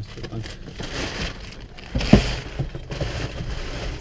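Rustling and knocking of a person moving about in a tractor cab, with one louder, sharp thump about two seconds in.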